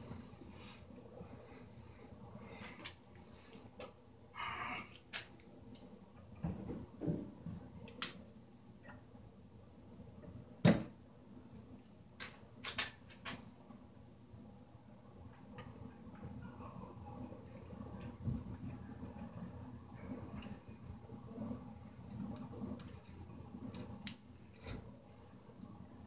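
Scattered light clicks and taps as stiff copper electrical wires are bent and handled against a metal junction box, with two sharper clicks standing out. A low steady hum runs underneath.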